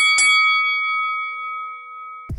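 A fight bell struck quickly in succession at the very start, its ring then fading out over about two seconds, marking the end of the bout.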